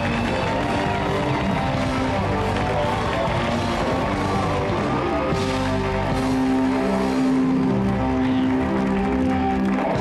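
Talk-show house band playing walk-on music: a steady run of sustained notes over a continuous beat, carrying the guest to his seat.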